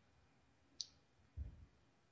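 Near silence, broken by a single faint click a little under a second in and a soft low thump about half a second later.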